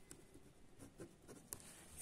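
Pen writing on a sheet of paper: faint, short scratches of the strokes, with a sharper tick about one and a half seconds in.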